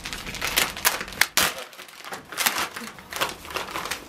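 White padded mailing envelope crinkling and rustling as it is handled and opened, in an irregular run of quick crackles.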